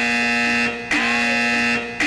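Electronic door-entry alarm buzzing in long, loud repeated tones about once a second, set off by someone crossing the door.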